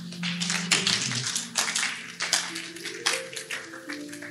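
Congregation applauding, dense and irregular at first and thinning near the end, over held notes of background music that step up in pitch partway through.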